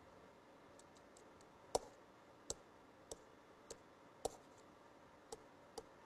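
Irregular, sharp clicks at a computer while a stalled lecture-presentation pen is being coaxed back to work: about seven distinct clicks, roughly half a second to a second apart, over quiet room tone.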